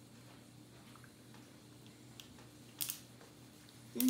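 Kitchen knife cutting cooked chicken breast on a wooden cutting board: faint taps and one sharper knock of the blade on the board about three seconds in, over a steady low hum.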